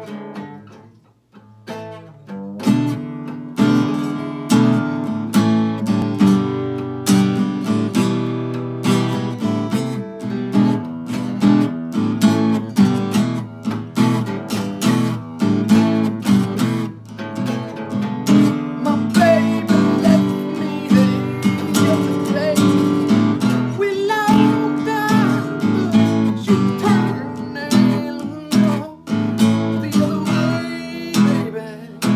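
Two acoustic guitars jamming a blues, strummed in a steady rhythm; after a few loose notes they settle into the groove about two and a half seconds in.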